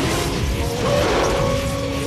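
Proton pack stream firing, as a film sound effect: a dense, crackling rush that starts suddenly just before and runs on, over background music with a few held tones.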